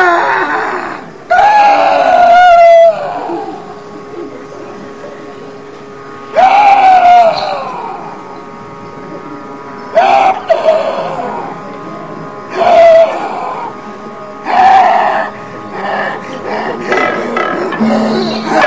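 Kathakali padam singing by male vocalists: short, separate sung phrases that bend and glide in pitch, with gaps between them, over a steady held drone tone.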